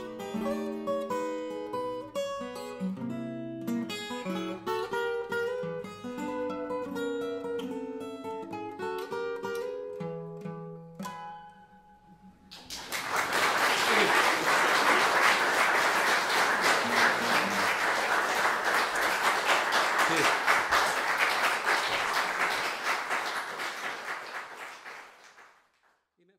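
Fingerpicked steel-string acoustic guitar playing the closing bars of a blues tune, ending on a low ringing note. About halfway through, audience applause breaks out, louder than the guitar, and fades out near the end.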